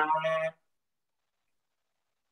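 A man's voice calling out a drawn-out count word, ending about half a second in; then dead silence.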